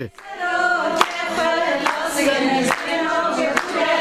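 A group of women singing together in unison, clapping their hands together in a steady beat a little under once a second.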